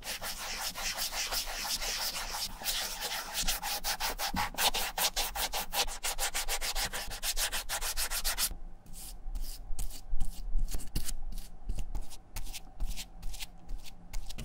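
A cotton swab held in forceps scrubbing the exposed foam sole of a running shoe in fast, dense rubbing strokes, cleaning it before the new sole is glued on. About eight and a half seconds in, the strokes become slower and separate, the sound of a bristle brush spreading glue on the foam.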